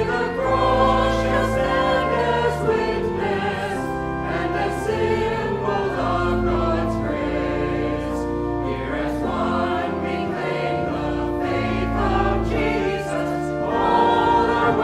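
Church choir singing a hymn over an accompaniment of long held low notes.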